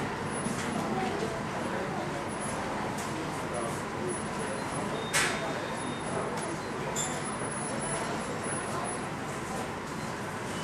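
Steady rush of airport apron noise while a Boeing 737 is pushed back by a towbarless tug, with a single sharp click about five seconds in.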